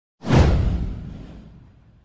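A single whoosh sound effect with a heavy low end. It starts sharply just after the beginning, sweeps down in pitch and fades out over about a second and a half.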